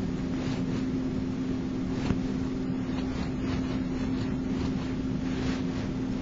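Steady background room noise: a low rumble under a constant hum, with a few faint soft clicks.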